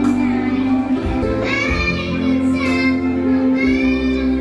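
A young girl singing a solo into a microphone, holding long notes over a sustained electronic keyboard accompaniment.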